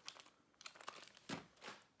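Faint crinkling of sweet packaging being handled: a few short, soft crackles.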